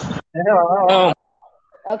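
One drawn-out, evenly quavering vocal call, bleat-like, lasting under a second.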